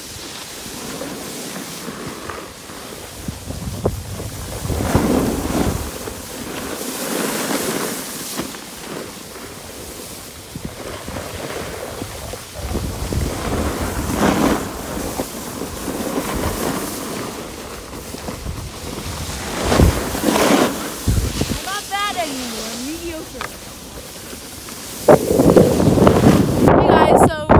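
Skis sliding and scraping over packed snow, with wind buffeting the microphone in swells, getting louder just before the end.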